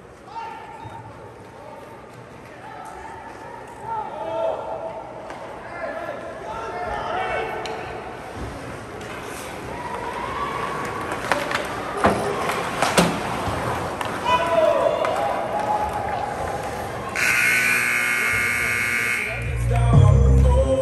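Rink ambience during ice hockey play: shouting voices and sharp clacks of sticks and puck. Then an arena buzzer sounds loudly for about two seconds near the end.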